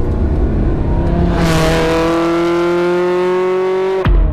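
Ferrari 360's 3.6-litre V8 pulling away, heard from inside the cabin: a low rumble, then the engine note rising steadily as the revs climb under acceleration. It cuts off suddenly at the end.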